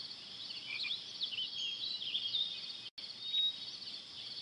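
Outdoor ambience of a steady, high, pulsed insect chirring, with small birds chirping in short rising and falling notes through the first half or so. The sound drops out for an instant just before three seconds in.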